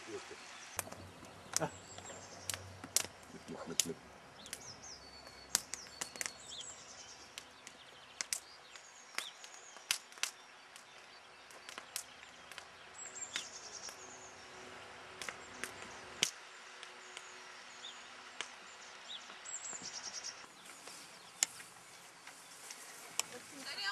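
Quiet outdoor ambience with small birds chirping now and then, many short sharp clicks scattered throughout, and a low hum that cuts off suddenly about sixteen seconds in.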